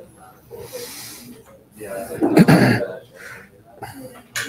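Indistinct voices talking in a lecture hall, with one loud, brief burst of noise about two and a half seconds in.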